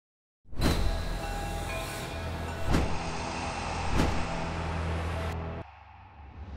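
Train sounds: a loud low rumble with three sharp metallic clanks spaced about a second apart, cutting off suddenly near the end.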